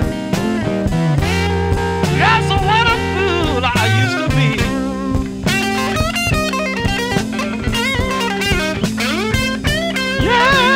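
Electric blues guitar playing a lead break over a backing band with drums, with bent, wavering notes.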